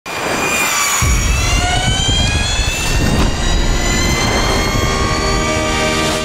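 Engine of a motorized go-kart desk revving as it accelerates, the pitch climbing, dipping briefly about three seconds in, then climbing again.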